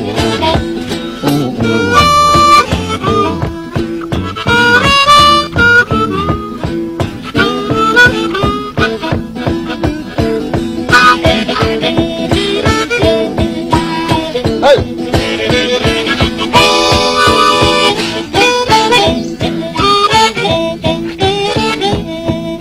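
Blues harmonica solo, with bending notes over a guitar keeping a steady driving rhythm. Near the three-quarter mark the harmonica holds a long, full chord.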